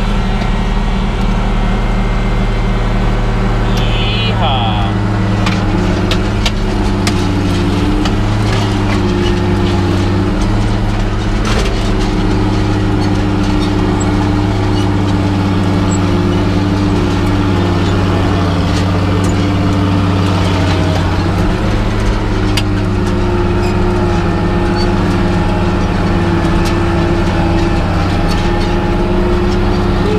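International Harvester 2+2 articulated tractor's diesel engine running steadily under load as it pulls a chisel plow through the soil, heard from inside the cab.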